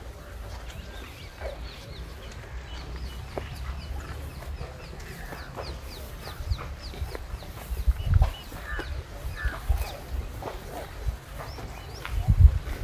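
Birds calling: a quick run of short, high, falling chirps, then a few lower calls about nine seconds in, over a steady low rumble that swells briefly around eight seconds in.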